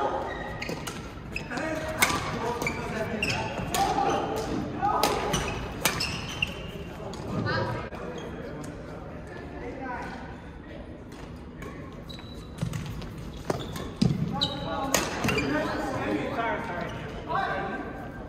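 Badminton racket strikes on a shuttlecock during a doubles rally: sharp cracks a second or more apart, echoing in a large hall, among voices.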